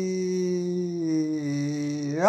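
A man's voice holding one long sung note, which drops in pitch in two small steps in the second half.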